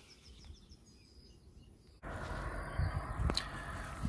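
Faint rural outdoor ambience with faint bird chirps. About halfway through it cuts abruptly to the steady road and engine noise of a moving car heard from inside the cabin, with a single sharp click near the end.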